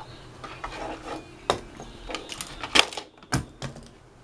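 Irregular clicks, knocks and rubbing, a few sharp ones standing out, over a faint low steady hum.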